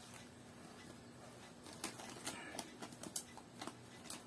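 Faint, irregular crinkles and clicks of a package being picked and torn open by hand, beginning about a second and a half in.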